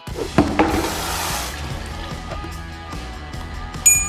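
A kitchen faucet runs water into a sink for about a second and a half, a hiss heard over background music with a steady beat. Near the end there is a single bright ding.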